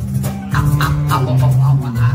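Live band playing a steady groove, with bass guitar, electric guitar and hand percussion.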